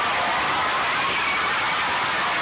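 Large audience in a hall cheering and clapping: a steady wash of applause with scattered shouting voices.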